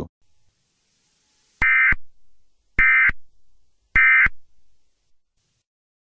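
Emergency Alert System end-of-message data bursts: three short, loud screeching digital tones, about a second apart.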